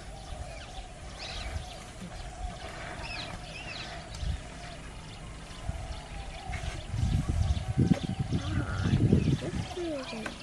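Outdoor ambience with a few short bird chirps and a steady faint hum. A louder stretch of low, irregular rumbling noise runs through the last three seconds.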